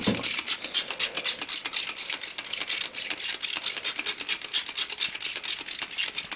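Hand trigger spray bottle squeezed over and over, misting water onto potting soil: a rapid, even run of short hissing squirts, several a second.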